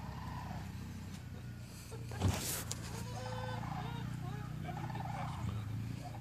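A short, loud noise a little over two seconds in, then a warbling animal call from about three seconds to five and a half seconds, over a steady low hum.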